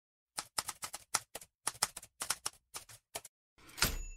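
Typewriter sound effect: a rapid run of about twenty irregular key strikes, then a louder swish and the start of a ringing ding at the very end.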